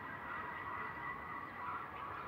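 Quiet atmospheric intro of a minimal deep tech track: a faint hazy electronic texture with a thin steady high tone and slowly swelling midrange, with no drums or bass.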